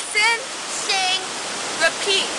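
Steady rushing spray of a large plaza fountain, with a girl's voice saying three short words over it ("Listen, sing, repeat"), the last just at the end.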